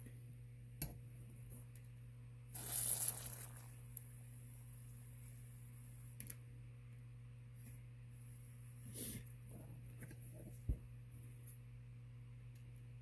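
WD-40 aerosol can sprayed through its straw in two hissing bursts, about a second long a little under three seconds in and a shorter one near nine seconds, soaking the seized grip screw threads. A few small clicks and a steady low hum lie under it.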